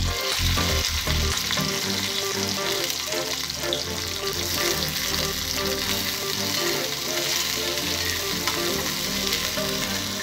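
Cut okra pieces sizzling steadily as they fry in hot oil in a metal kadai, stirred with a metal spoon. The okra goes in at the start and the sizzle holds even for the rest.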